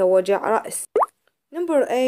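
Speech, broken about a second in by a short rising blip and half a second of dead silence before the voice resumes.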